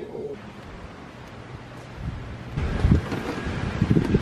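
Wind buffeting the camera's microphone: a low hiss at first, then irregular rumbling gusts from about halfway through.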